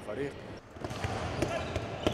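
Handballs bouncing and being thrown on a wooden sports-hall court during a training session: a run of sharp, irregular thuds.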